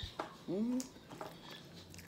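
A woman's brief wordless vocal sound about half a second in, with a few faint clicks from eating with her fingers.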